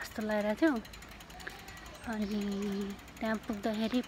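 A woman's voice carrying a tune without words in short held notes, one longer note about halfway through.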